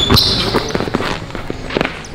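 Basketball dribbled hard on a hardwood court, a series of sharp bounces, with a brief high sneaker squeak near the start.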